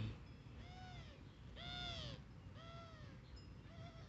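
An animal calling three times, about a second apart. Each call lasts about half a second and rises then falls in pitch, and a fainter short call comes near the end.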